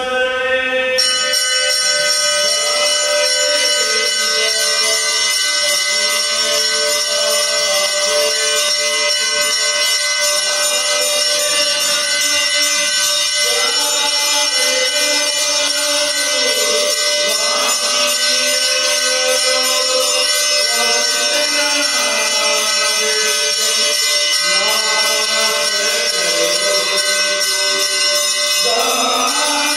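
Devotional chanting, a slow melodic line of voices, over a continuous high ringing that starts about a second in.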